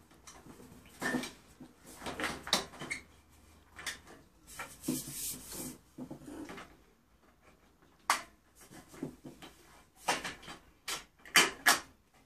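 Clicks and knocks of long lamp tubes being handled and fitted into the end sockets of fluorescent light fixtures, with a short scraping rustle about five seconds in and a quick run of knocks near the end.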